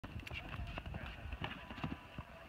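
Hoofbeats of a cantering horse on soft arena dirt: a quick, uneven run of dull thuds, with faint voices behind.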